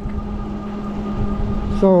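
Ariel Rider Grizzly e-bike riding along a street: wind rumbling on the microphone over a steady low hum from the moving bike. A man's voice starts right at the end.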